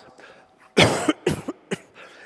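A person coughing: one loud cough about a second in, then a shorter, weaker one just after.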